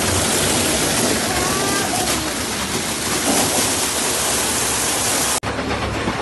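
Water gushing from a water-truck's hose into a large plastic water tank, a loud steady rushing that stops abruptly about five seconds in, leaving a quieter hiss.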